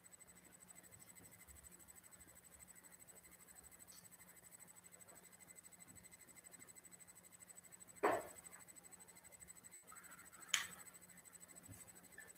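Very faint room tone with a low steady hum, broken by two short handling noises of paper or pen on a desk, about eight and ten and a half seconds in.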